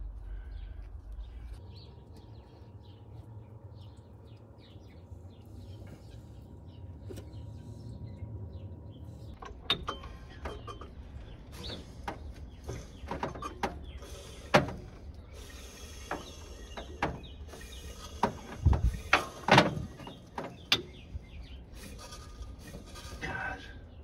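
Hydraulic valve lifters and tools being handled in the lifter valley of a V8 engine block. A low rumble runs at first; from about ten seconds in come irregular metallic clicks and knocks, the loudest ones near the middle.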